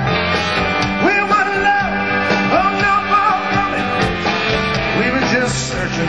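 Live rock band playing: electric guitars, bass and drums, with a lead melody line that slides into and holds long notes over the band.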